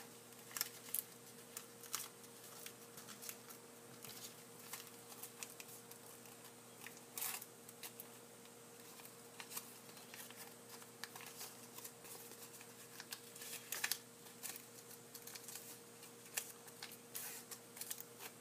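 Faint, irregular crackles and rustles of origami paper being creased and folded by hand as its creases are reversed, over a steady low hum.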